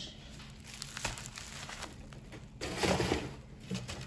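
Plastic bubble-wrap packaging crinkling as a package is handled, loudest for a moment about two and a half to three and a half seconds in.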